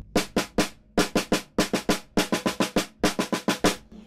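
Wooden drumsticks playing a run of strokes on a snare drum, about six a second, with a short pause just under a second in.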